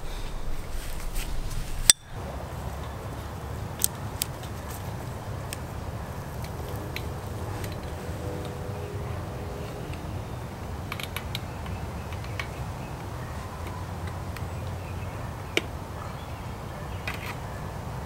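Scattered small metallic clicks and ticks of galvanized wire mesh being handled and bent by hand to join old fence wire to a wooden gate, over a steady low outdoor rumble. One sharp click about two seconds in is the loudest sound.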